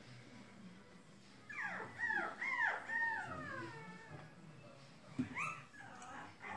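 A puppy whimpering: a run of high, falling whines over about two seconds, then another short whine near the end.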